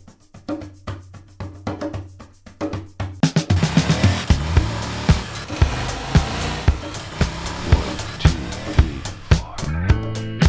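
A band's song with a drum kit. The first few seconds hold only sparse, evenly spaced percussion; about three and a half seconds in, the full band comes in over a steady kick-and-snare beat.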